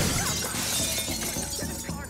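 Glass shattering: a sudden crash followed by shards tinkling and scattering, fading over about a second and a half.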